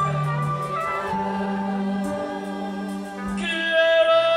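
Live gospel band music with voices singing over long held chords from keyboard and brass; the chord changes about a second in and the music swells louder near the end.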